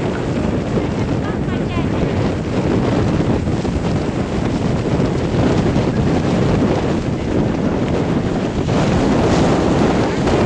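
Wind buffeting the microphone over the steady rush of churning river water and the roar of the waterfall, filmed on an open boat deck close below the falls.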